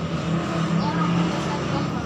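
Steady low hum of a motor vehicle engine running, with faint voices behind it.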